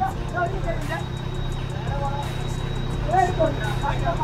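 Off-road SUV engine running steadily under load as a vehicle stuck in mud is pulled out on a tow strap, with men's voices calling out near the start and near the end.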